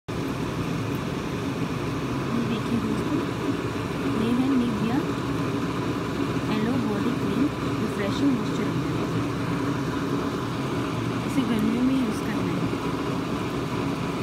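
Steady background noise with indistinct, wavering voices in it.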